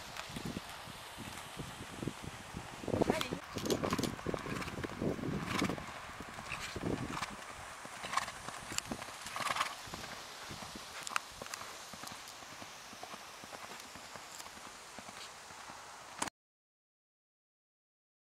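A pony's hooves striking the sand of a riding arena in an irregular trot and canter rhythm, loudest a few seconds in and fading as it moves away. The sound cuts out abruptly near the end.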